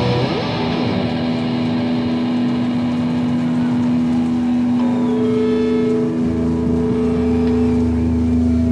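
Live rock band's electric guitars and bass holding a final chord and letting it ring out after a last hit, sustained and steady, with a higher held guitar note joining about five seconds in and a low drone about a second later.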